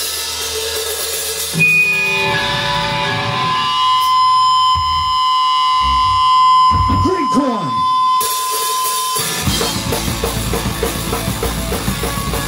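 Punk rock song intro: about eight seconds of sustained held tones and a wavering pitch sweep, then the full band of drums, bass and electric guitar comes in hard about nine seconds in with a fast, steady beat.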